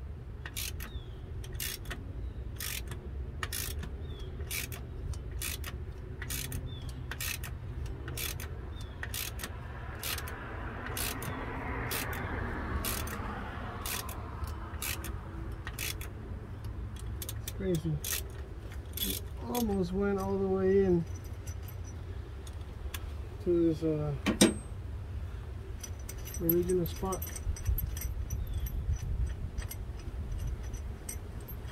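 Hand ratchet clicking steadily, about two to three clicks a second, as it turns the installer bolt that presses the crankshaft pulley onto the 5.3L V8's crank. Near the end come a few short vocal sounds.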